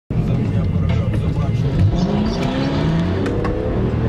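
BMW M3 engine heard from inside the cabin, pulling under acceleration, its pitch rising steadily through the second half.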